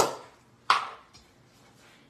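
Two sharp knocks about two-thirds of a second apart, the first fading over about half a second.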